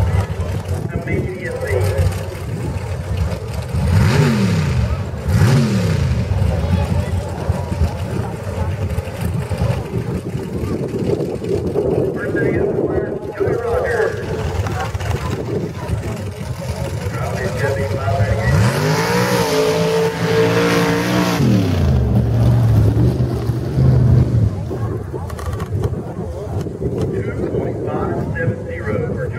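Lifted 4x4 mud truck's engine idling, blipped twice about four seconds in, then revved up and held for about three seconds before dropping back to idle.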